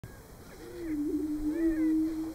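Greater prairie chickens booming on a lek: one long, low moan made with the males' inflated neck air sacs, starting a little way in, held steady and stepping up slightly in pitch partway through, with fainter, higher gliding calls from other birds around it.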